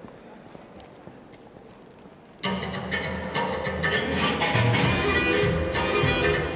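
Quiet hall sound with a few faint clicks, then quickstep dance music starts abruptly about two and a half seconds in and plays on at full level.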